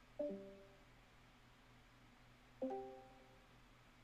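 Two short musical notes, each a few tones sounding together, about two and a half seconds apart, each starting sharply and fading within a second.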